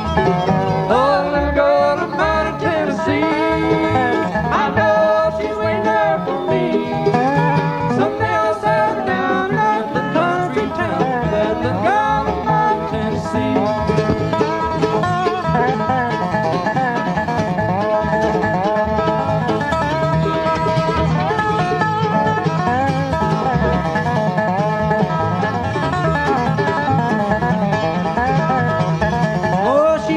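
Acoustic bluegrass band playing live: an instrumental break of plucked strings over a steady rhythm, with some sliding notes.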